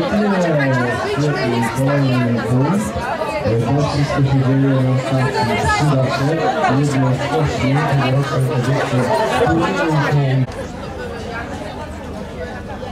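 Several women talking over one another close by, a lively chatter of overlapping voices. It cuts off abruptly about ten and a half seconds in, leaving fainter background talk.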